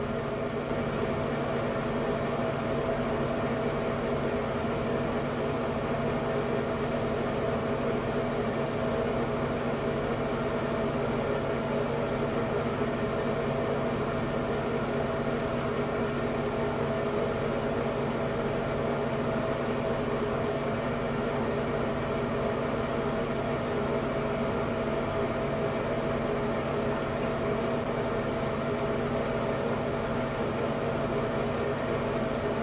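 Light-and-fan combo exhaust fan running with a steady, even hum and whir, a few fixed tones held under the noise without change.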